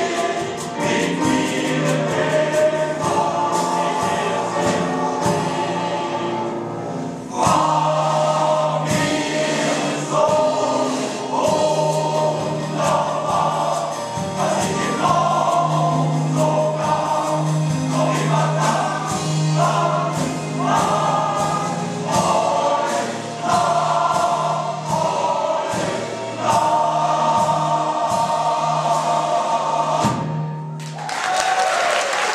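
A male voice choir singing in parts, with sustained notes, dipping briefly about seven seconds in and then coming in louder.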